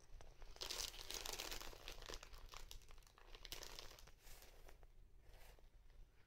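Clear plastic packaging bag crinkling as it is handled. There is a longer stretch of crinkling about a second in, then a few shorter rustles.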